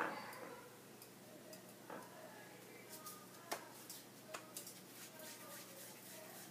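Faint scattered ticks and pops of oil crackling under a stuffed paratha frying on a tawa, with a knock right at the start.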